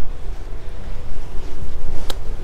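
Wind rumbling on the camera's microphone aboard a sailing catamaran: a steady low rumble, with faint water noise beneath it.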